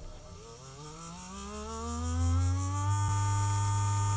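Small brushed DC motor running on the power supply's output, its hum rising in pitch and getting louder as the voltage is turned up from about 3 V to 12 V, then holding a steady pitch for the last second.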